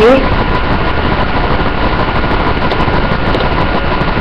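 Steady, loud whirring noise with a faint steady whine, like a fan or small motor running, with no distinct events.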